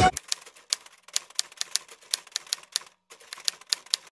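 Typewriter sound effect: a run of quick key clicks, about five a second, timed to text being typed onto a title card letter by letter, with a short break about three seconds in.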